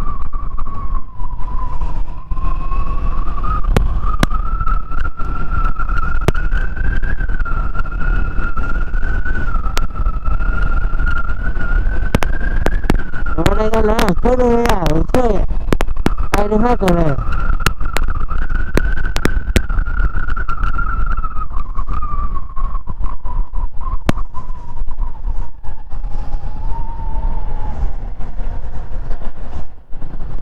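Kawasaki Z400 (399 cc parallel twin) motorcycle riding at steady city speed, with heavy wind rumble on the microphone and a steady high whine that drifts slowly up and down. A voice laughs or talks briefly about halfway through.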